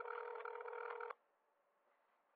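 A steady electronic tone over a telephone line, held for about a second and then cut off, leaving faint line hiss: the call being transferred to another extension.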